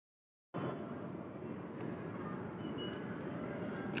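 Steady, rough wind noise rumbling on the microphone, starting after about half a second of silence, with a few faint clicks and one brief faint high note near the middle.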